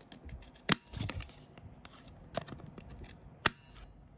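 Hand-held corner rounder punch snapping through cardstock, rounding the corners of printed cards: two sharp snaps about three seconds apart, with a lighter click and paper rustling between.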